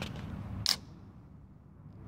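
Aluminium beer can's ring-pull tab cracking the seal open: one short, sharp snap a little under a second in.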